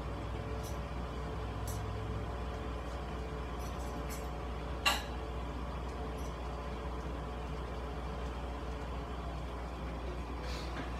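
Steady low mechanical hum, like a household appliance running, with a few faint clicks and one sharp knock about five seconds in.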